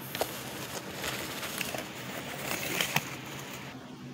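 Cardboard toy train being pushed by hand along the floor: a scratchy rustling and scraping with scattered light clicks, over a faint steady hum.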